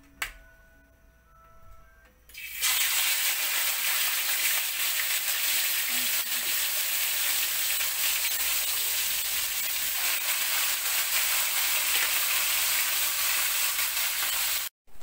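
Whole fish frying in hot oil in a steel wok: a steady, loud sizzle sets in suddenly about two and a half seconds in as the fish goes into the oil. A single sharp click comes just before.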